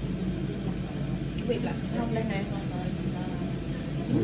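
A steady low hum, with faint indistinct voices talking in the background in the middle of the stretch.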